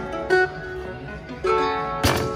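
Background music: plucked guitar-like chords, struck twice about a second apart, each ringing and fading.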